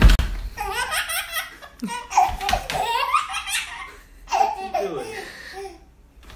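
A baby laughing hard in three bouts of high-pitched belly laughter. There is a sharp thump at the very start.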